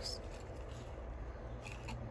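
Faint rustling and light clicks of a cardboard cut-out figure being handled and moved, a couple of them near the end, over a low steady background rumble.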